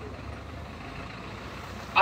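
A pause in speech filled by a steady low rumble of outdoor background noise.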